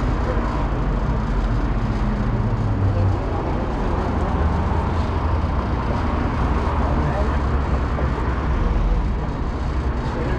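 Steady street ambience: a continuous low rumble of road traffic with indistinct voices mixed in.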